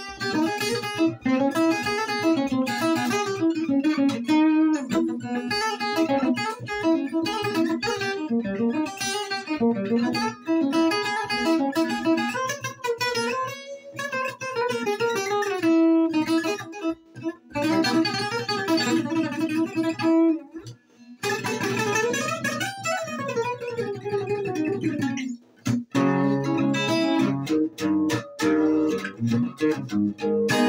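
Selmer-Maccaferri-style acoustic guitar with a small oval soundhole played solo: quick runs of single notes, a fast sweep up and back down the neck about three-quarters through, then strummed chords in a steady rhythm near the end.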